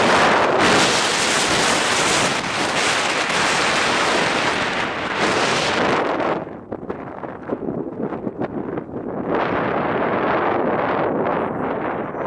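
Wind rushing on the microphone in a moving car: a loud, steady rush that drops away about halfway through, flutters unevenly, and builds again a few seconds later.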